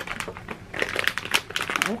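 Plastic packaging bags and wrap crinkling as they are handled, a run of crackles that grows denser in the second half.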